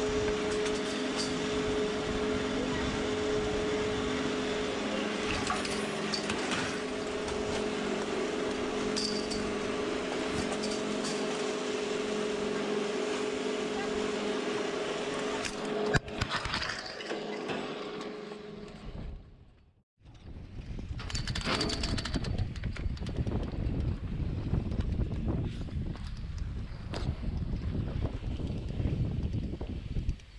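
Drag ski lift's drive machinery at the bottom station, a steady hum of several held tones, ending in a sharp clack as the tow bar is taken about sixteen seconds in. After a short drop-out, an uneven scraping rush of skis sliding over groomed snow while being towed uphill on the lift.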